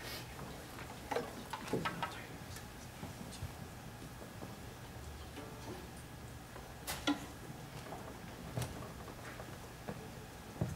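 Hushed hall over a low steady hum, broken by scattered small clicks and knocks as a seated string orchestra and its audience settle before playing. The sharpest knock comes about seven seconds in.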